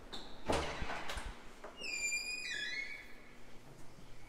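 A heavy hallway door with an overhead closer being pushed open: a knock of the latch about half a second in, then a high squeak as the door swings that drops in pitch in a couple of steps.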